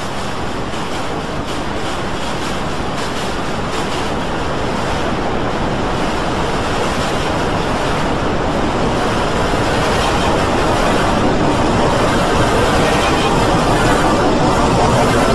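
A dense, roaring wash of noise from many copies of a video's soundtrack layered on top of one another, so that no single voice, tune or sound stands out; it grows slowly louder.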